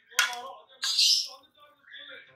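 Steel ladle stirring curry in a stainless steel pot, scraping against the metal in two short bursts, one near the start and one about a second in.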